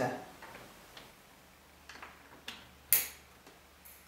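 A few light clicks and taps from an Ethernet patch cable's RJ45 plug being handled and pushed into a router port, the sharpest click about three seconds in.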